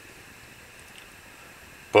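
Mini Trangia methanol burner burning under a stainless steel pot of water close to the boil: a faint steady hiss, with one small tick about halfway.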